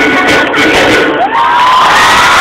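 Loud live pop concert music with a large crowd cheering and whooping over it.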